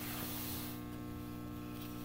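Steady electrical mains hum, a low buzz made of several even tones, with a soft hiss that fades out in the first second.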